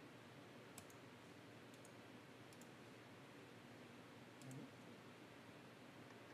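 A few faint computer mouse clicks, several in quick pairs, over a quiet room hiss.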